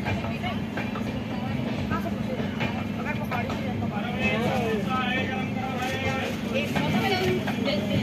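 Steady running rumble of a moving Indian Railways passenger train heard from inside the coach, with passengers' voices over it, clearest in the middle.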